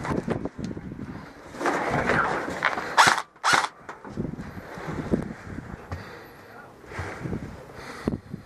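Rustling of handled gear, then two sharp clacks about half a second apart, roughly three seconds in, as an airsoft rifle is worked at a window of a metal helicopter hulk.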